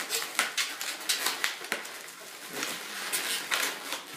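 Latex modelling balloons rubbing and squeaking against each other as they are squeezed and pushed into place in a twisted-balloon sculpture: a run of short, irregular squeaks and rubbing noises.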